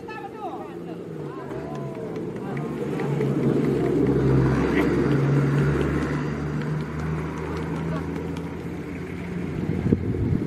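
A motor vehicle engine runs with a steady low hum, growing louder to a peak about four to five seconds in and then fading, as it passes by. People's voices are heard early on.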